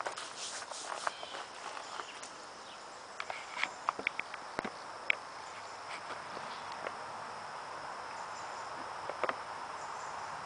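Footsteps and handling noise in forest leaf litter: a scatter of light crackles and snaps, most of them between about three and five seconds in. A faint, steady, high-pitched insect drone runs underneath.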